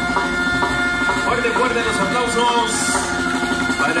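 A brass band holding a sustained chord that dies away about a second in, followed by a man's voice speaking over the background.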